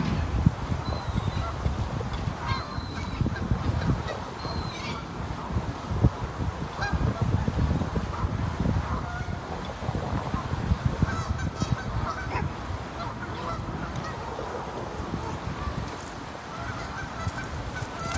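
A flock of Canada geese honking on and off over a steady low rumble.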